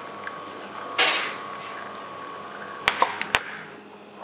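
Espresso machine running as a shot pours into a small glass tumbler, with a brief whoosh about a second in. Near the end come three sharp clicks as the glass shot tumblers are set down on a stone counter.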